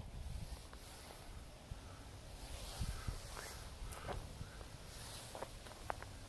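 Faint, irregular footsteps crunching on gravel and dry leaves, a handful of soft steps over a low steady rumble.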